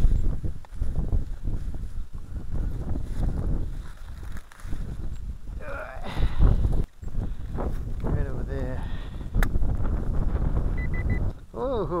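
Digging out a metal-detector target in hard, dry soil with a hand digger: repeated scraping and knocks over a constant low rumble.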